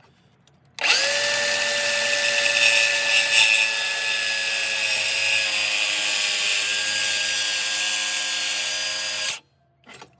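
DeWalt circular saw cutting into a wooden newel post. It starts with a quick spin-up, runs with a steady whine for about eight and a half seconds, then cuts off abruptly near the end.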